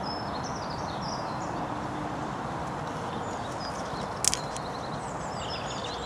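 Lakeside outdoor ambience at dawn: a steady background rush with small birds chirping now and then. A sharp double click comes about four seconds in.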